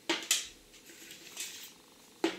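Hands handling a black cardboard watch box on a table: two sharp knocks about a quarter second apart at the start, then a faint rustle.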